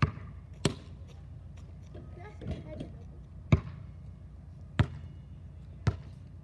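Basketball bouncing on an asphalt street: five sharp bounces at uneven intervals, the loudest about three and a half seconds in.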